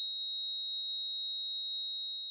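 A single steady, high-pitched pure electronic tone, held unchanged throughout.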